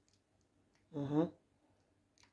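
Speech only: one short spoken phrase about a second in, with near silence around it.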